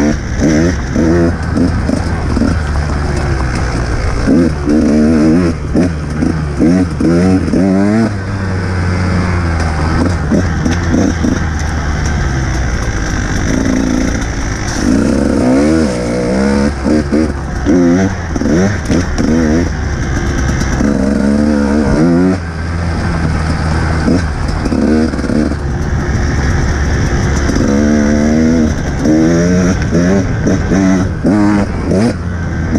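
Dirt bike engine under way on an enduro trail, revving up and down over and over as the throttle is worked, its pitch rising and falling every second or two.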